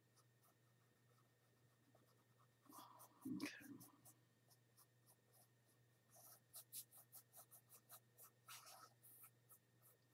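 A small paintbrush stroking paint onto a canvas: faint, scratchy short strokes, with a quick run of about four a second starting about six seconds in.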